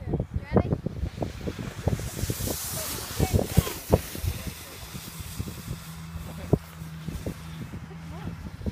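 Wind buffeting the microphone in irregular low thumps, with a few distant children's shouts. About two seconds in, a plastic sled sets off down packed snow, and its base hisses over the track for a second or so.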